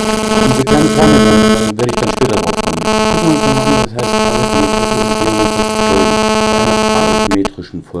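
A loud, harsh electronic buzz, a steady tone with many evenly spaced overtones, interfering with the recording and masking the speech underneath. It drops out briefly twice and cuts off suddenly shortly before the end.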